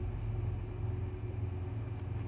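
Idling semi-truck diesel engine: a steady low hum.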